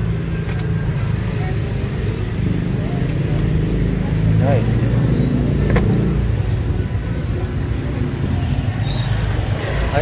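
Small motorcycle and scooter engines running steadily close by in a narrow street, a low engine hum of slow-moving traffic. There are brief faint voices, and a single sharp click about six seconds in.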